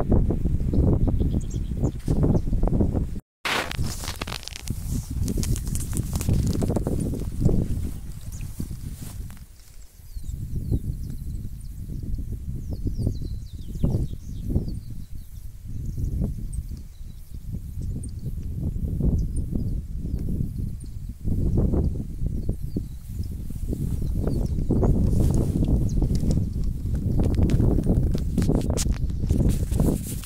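Gusty wind buffeting the microphone: a low rumble that rises and falls unevenly, cutting out for a moment about three seconds in.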